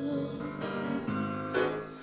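Piano playing soft, sustained chords of a slow ballad, entering in three strokes, while the tail of a held sung note fades away in the first half second. The music dies down toward the end.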